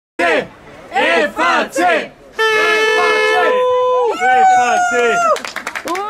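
Young voices shouting a team cheer in unison: a quick run of short shouted syllables, then two long drawn-out calls, the second one higher.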